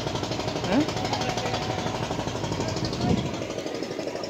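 Boat's diesel engine running steadily with a rapid, even knocking rhythm, heard from on board. Brief voice sounds cut through it about a second in and again near the end.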